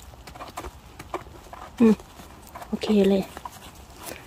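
Small knife scraping and trimming the base of a porcini mushroom stem: a few light clicks and scrapes in the first couple of seconds.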